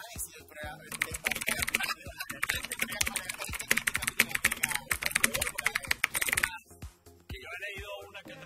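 Rapid computer-keyboard typing sound effect, a quick run of clicks that starts about a second in and stops abruptly after about five and a half seconds, over voices and background music.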